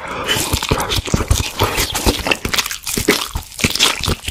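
Biting into and chewing crispy fried chicken, recorded close to an ASMR microphone: a rapid run of many short crunches.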